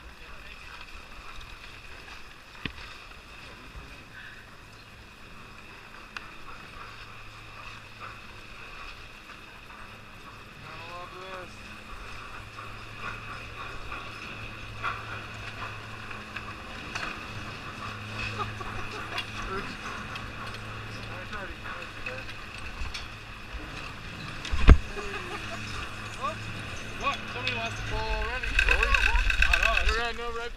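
A chairlift loading station: the lift machinery runs with a steady low hum under the scrape and clatter of skis on packed snow and the chatter of people nearby. A single sharp knock comes about three-quarters of the way through, and the noise grows louder over the last couple of seconds as the chair carries its riders out.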